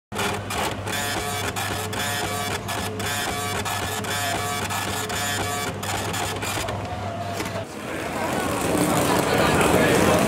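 A kitchen order-ticket printer printing: a rapid, irregular mechanical chatter over a steady hum, which stops at about eight seconds. It gives way to the louder chatter of voices in a busy restaurant.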